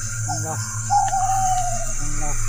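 A person's long, high drawn-out wailing cry that slowly falls in pitch for about a second, starting about a second in and preceded by a couple of short vocal sounds, over a steady low hum.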